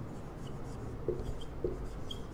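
Whiteboard marker writing on a whiteboard: faint short scratchy strokes as letters are drawn, with two soft knocks, about a second in and again half a second later.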